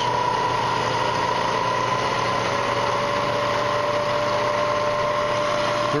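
Bridgeport Series 1 vertical milling machine head running in low range, its spindle motor and variable-speed drive giving a steady whine and hum. One tone of the whine rises slowly in pitch as the speed-change handwheel is turned to raise the spindle speed toward 300 rpm.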